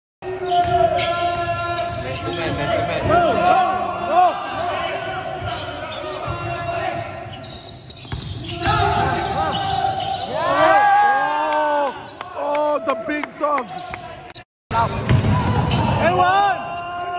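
Basketball being played on an indoor hardwood court: many short sneaker squeaks and the ball bouncing, with players' voices. The sound drops out for a moment about a second and a half before the end.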